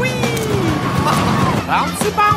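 Kiddie roller coaster running with riders whooping, one falling cry right at the start, over a constant din and low steady background music.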